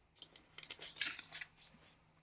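Angel-number oracle card sliding and rustling against the deck as it is drawn and lifted: a soft string of short papery scrapes.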